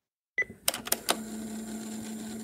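Dead silence, then a click and a quick run of four or five sharp clicks about half a second to a second in, followed by a steady low electrical hum with hiss.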